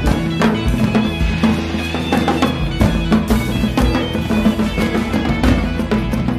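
Band music playing steadily: a drum-kit beat with a bass line and pitched instrument parts above it.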